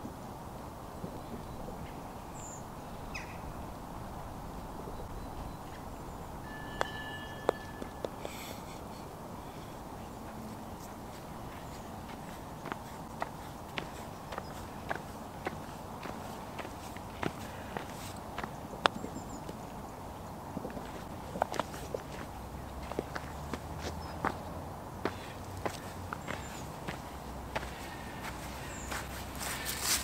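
Footsteps of metal-spiked golf shoes on frozen grass, a run of short sharp clicks that grows denser over the second half. A brief bird chirp comes about a quarter of the way in.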